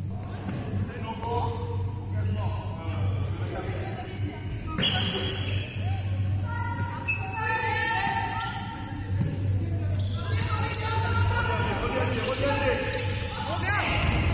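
Handball bouncing on a sports-hall court with players' voices and calls, echoing in the large hall.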